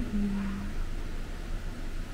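A spoon stirring a thick tomato and cream sauce in a pot, faint over a steady low hum.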